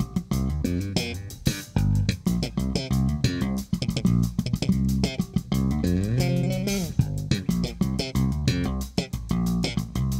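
Four-string electric bass guitar playing a fast funk-style line of sharp, percussive notes, with one note sliding up in pitch about six seconds in.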